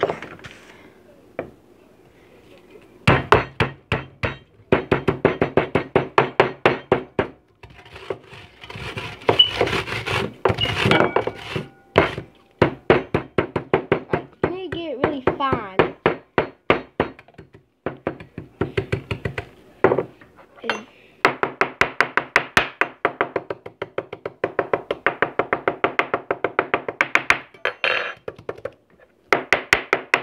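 Goldfish crackers in a zip-top plastic bag being pounded on a wooden table with a hard container to crush them into crumbs: a rapid run of thunks, about four a second, coming in several bursts with short pauses between.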